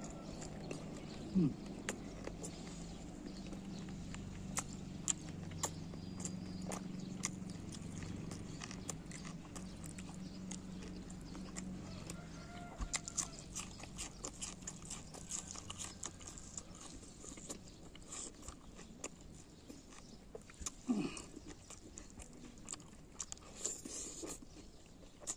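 Close-up chewing and mouth sounds of a man eating chicken curry with his fingers: many small wet clicks and smacks as he chews. A low steady hum runs underneath for the first half.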